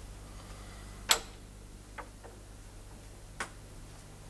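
Four sharp knocks or clicks at uneven intervals, the loudest about a second in, over a steady low hum.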